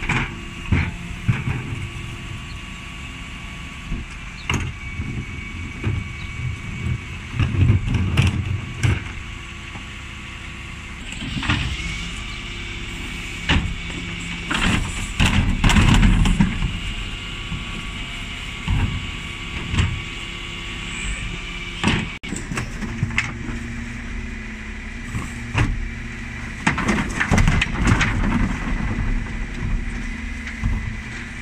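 Dennis Elite 6 refuse lorry running at the kerb while its Terberg OmniDE rear bin lift works, with a steady hydraulic whine. Plastic wheelie bins clank and thump as they are lifted, tipped and shaken empty, the loudest knocks coming in clusters several times.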